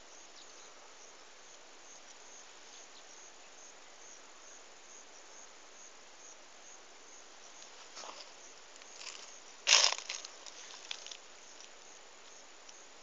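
Crickets chirping steadily in a rhythmic high pulse. About ten seconds in there is a brief loud rustle, with a few softer rustles just before and after it.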